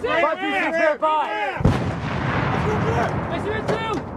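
A 155 mm M777 towed howitzer firing: one sharp blast about a second and a half in, followed by a long rolling rumble of echo.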